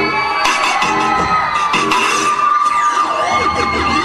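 Dance music playing loudly, with an audience cheering and shouting over it.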